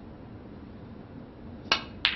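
A single sharp click near the end as a snooker cue tip strikes the cue ball, the start of a shot that goes on to pot a ball.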